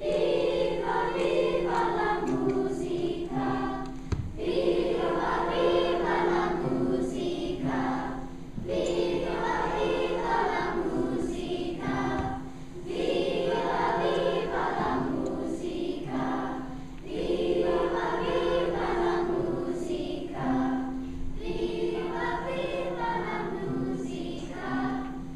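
Children's choir singing in phrases of a few seconds each, with steady low notes held underneath that switch back and forth between two pitches.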